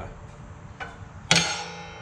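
A single sharp metallic clank, a little over a second in, that rings briefly as it fades, after a lighter click: the broken-off steel lifting hook being set down against the plow's steel mounting plate.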